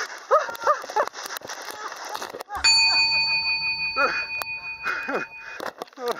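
Voices crying out in short exclamations. About two and a half seconds in, a steady bell-like ring starts suddenly under them and holds for about three seconds, with a low rumble beneath it.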